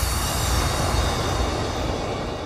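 A long, steady, hiss-like wash in the background music, like a sustained cymbal or noise swell, fading slowly as its highest part dies away.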